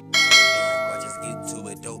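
A bell-like notification chime sound effect, struck once just after the start and ringing out over about a second and a half, over background music.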